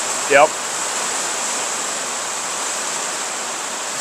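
Steady, even hiss of background noise with a faint high whine running through it, after a brief spoken "yep".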